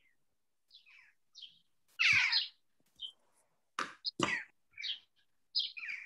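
A bird chirping, a string of short separate calls with a longer downward-sliding call about two seconds in.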